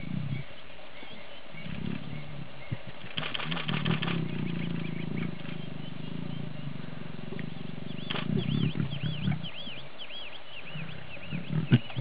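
Lions growling low and rumbling during courtship, in two stretches, about two seconds in and again about eight seconds in. High repeated bird chirps are heard toward the end.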